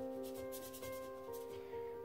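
Soft background music of held keyboard notes, with a wet watercolor brush stroking across paper several times in the first second and a half.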